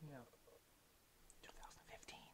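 Near silence in a podcast recording: a quiet spoken "no" at the start, then faint, barely audible speech near the end.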